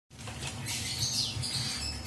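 Pet lorikeet giving high, scratchy chattering calls, over a steady low hum.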